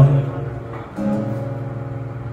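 Acoustic guitar played live, a chord fading and a new chord strummed about a second in, ringing on.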